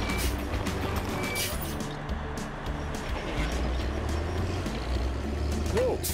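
Background cartoon music over the low, steady engine rumble of a construction machine at work, with scattered knocks.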